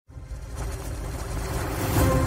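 Intro sound effect: a low, noisy swell that rises steadily in loudness from silence, leading straight into intro music right at the end.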